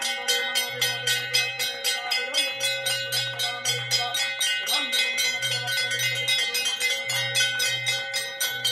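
Hanging brass temple bells struck rapidly and continuously, about five strikes a second, their ringing tones overlapping into a steady clangour.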